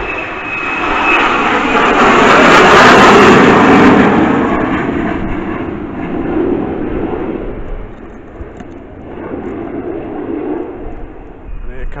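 F-35B Lightning jet passing low overhead on its approach to land. The loud rushing jet-engine noise swells to a peak about three seconds in, then fades steadily as the aircraft moves away.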